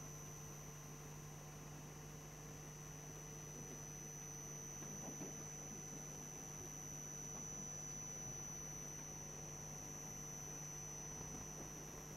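Faint steady electrical hum with a thin high whine over a low hiss: the background noise of the recording chain, with no speech.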